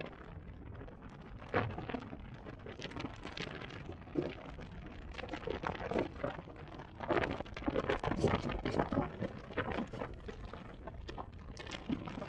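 Wind buffeting the microphone of a camera moving at road speed, an irregular rumble with crackling gusts that swell and fade every second or so.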